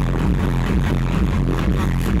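Loud electronic dance music with a heavy, steady bass beat, recorded live on a phone in a club.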